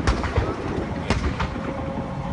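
Cars doing burnouts in the street, a loud steady engine and tyre rumble. Three sharp bangs cut through it, one at the start and two about a second in.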